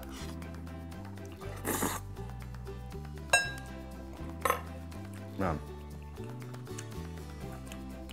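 Background music with a steady low bass line. Over it, a noodle slurp comes about two seconds in, then a single sharp, ringing clink of a metal fork on a ceramic bowl a little after three seconds, followed by a couple of short eating noises.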